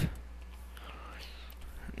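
Low steady electrical hum and hiss from a computer microphone, with a faint whisper-like voice sound around the middle.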